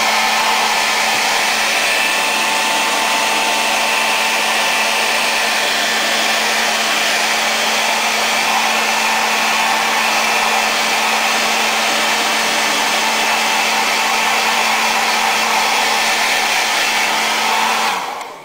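Handheld hair dryer running steadily, a constant rush of air with a low steady hum, blowing on wet brush-on paint to dry it; it is switched off right at the end.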